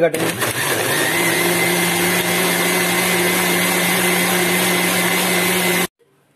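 Electric blender running steadily with a constant motor hum as it blends a plum shake, then cutting off abruptly near the end.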